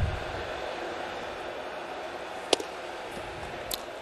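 Ballpark ambience on a TV broadcast: a steady hiss of stadium noise, with a low whoosh as a replay-wipe graphic passes at the start. A sharp click comes about two and a half seconds in and a fainter one near the end.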